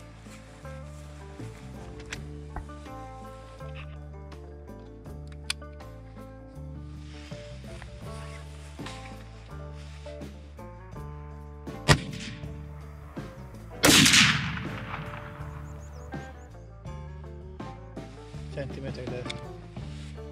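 Background music with a steady beat, over which a hunting rifle fires one loud shot about fourteen seconds in, its report trailing off over about a second. A sharp crack comes about two seconds before the shot. The shot is a test shot while sighting in the scope.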